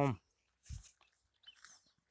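The tail of a spoken word, then quiet broken by a soft low thump of the handheld camera being moved, with a couple of faint rustles near the end.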